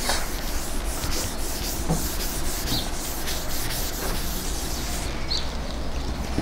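Chalk scratching and tapping on a chalkboard as words are written by hand, in many short strokes, over a steady low hum.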